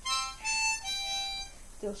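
Hohner harmonica in the key of C playing a short phrase of a few notes that dies away about a second and a half in. A woman's singing voice comes back in near the end.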